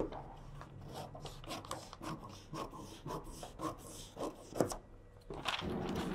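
Large scissors cutting through paper pattern sheet: faint, irregular snipping and paper crackling, with one louder crackle about four and a half seconds in.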